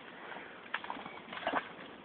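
Shallow stream water running steadily, with a few short faint splashes from a dog wading at the water's edge, about a second in and again around a second and a half.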